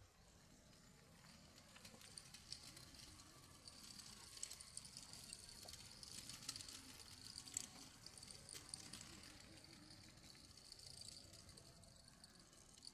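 Near silence: faint outdoor ambience, with a thin high-pitched hiss and light ticking through most of it.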